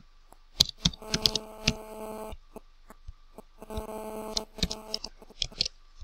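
Computer keyboard keystrokes and a few mouse clicks, as scattered sharp clicks. Twice, about a second in and again around four seconds in, a steady hum sounds for about a second.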